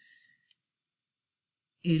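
Near silence between spoken words, with one faint tick about half a second in.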